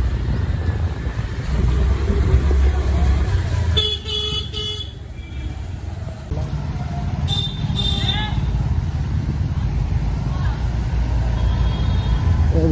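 Vehicle horns honking in slow street traffic over the steady low rumble of a motor scooter riding through a waterlogged road: one long honk about four seconds in, then two short toots near eight seconds.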